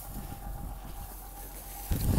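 Quiet outdoor background in a pause between words, with a sudden low rumble of wind buffeting the microphone just before the end.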